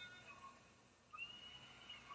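Near silence: faint ballpark crowd ambience, with a faint high held note, like a distant call or whistle, starting a little over a second in.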